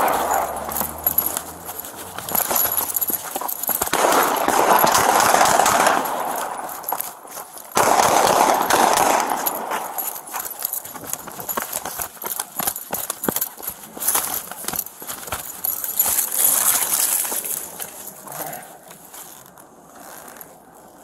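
A police officer running on foot, his footsteps and duty gear knocking and rattling against a body-worn camera, with three long rushes of noise over the microphone in the first half. The sound quietens near the end as he slows.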